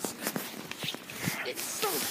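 Footsteps and rustling on leaf-littered ground while walking, heard as a scatter of irregular short crunches and clicks.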